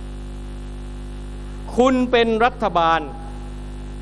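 Steady electrical mains hum from the sound system, heard on its own for the first two seconds and running on unchanged under a short spell of amplified male speech.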